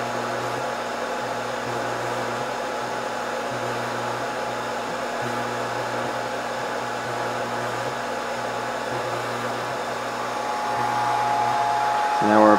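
Steady rushing air from a Scotle IR360 rework station's lower hot-air heater blower and fans, running through the soak stage of a reflow profile, with a low hum underneath that cuts out and back in several times. Near the end a steady higher tone joins and the sound grows slightly louder.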